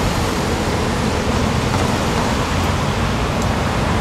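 Steady city street traffic noise: an even hiss over a low rumble, with no single vehicle standing out.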